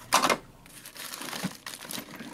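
Computer parts being handled in a cardboard box: a brief loud crinkle of plastic about a quarter second in, then quieter rustling with a few small clicks of parts.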